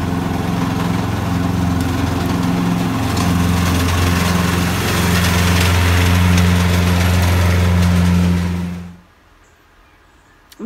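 Riding lawn mower engine running steadily as the mower passes, growing a little louder, then dropping away sharply about nine seconds in.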